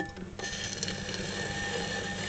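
Electric potter's wheel motor coming on about half a second in and then running steadily: a hum with a thin whine over a hiss.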